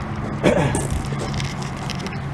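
An engine idling steadily, a low even hum.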